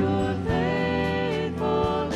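Live church worship band playing: piano, acoustic guitar, bass guitar and drums, with a woman singing long held notes.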